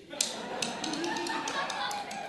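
Tap shoes striking the stage in a quick rhythm of sharp clicks, with voices rising over them from just after the start and carrying on for about two seconds.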